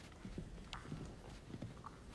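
Footsteps on a hard wooden floor: a series of light, irregular knocks, several a second.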